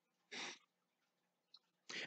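Near silence, broken once about a third of a second in by a man's short breath noise.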